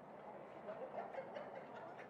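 Faint background voices and chatter from people around the track, with no clear single sound standing out.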